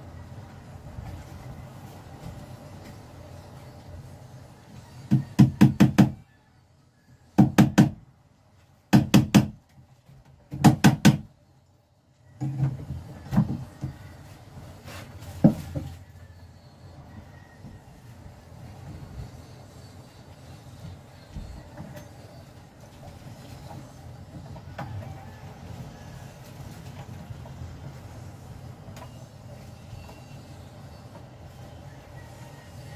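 Several short clusters of sharp knocks, three or four strokes each, from hand work on a boat's wooden cabin panel and its fittings, with steady low background noise.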